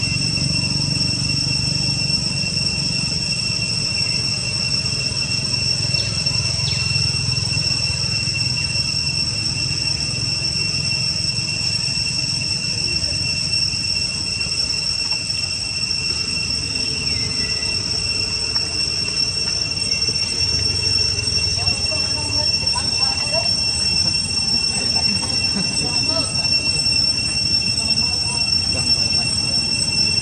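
A steady, high-pitched insect drone, unbroken, over a low background rumble, with a few faint chirps past the middle.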